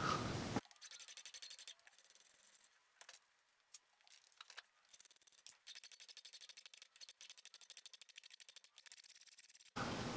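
Hand file rasping across the end of a metal rod clamped in a bench vise, flattening it, in faint, quick, even strokes. There is a short spell of strokes near the start, then a steady run through the second half.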